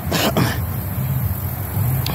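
A woman coughs, a short double cough about a quarter of a second in, over a steady low rumble.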